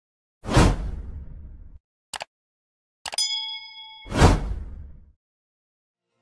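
Transition sound effects for an animated title: a whoosh, a short double click, a bell-like ding ringing with several tones for about a second, then a second whoosh.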